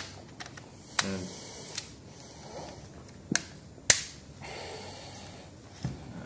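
Plastic laptop bodies being handled and set down: a few sharp clicks and knocks, the loudest about four seconds in, with soft shuffling between.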